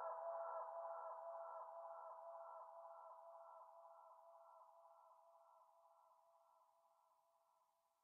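A held electronic synth chord at the close of a downtempo track, pulsing a little over twice a second and fading steadily away until it is gone near the end.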